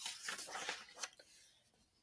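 Paper rustling and crackling as the page of a picture book is turned by hand, over about the first second, then fading out.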